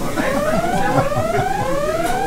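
Alarm-style siren sound effect: a whooping tone that rises in pitch and restarts about every 0.8 seconds.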